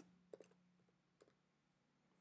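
A few faint computer keyboard keystrokes in the first half second, typing a word, then one more faint click just past a second in. Otherwise near silence, with a faint steady hum.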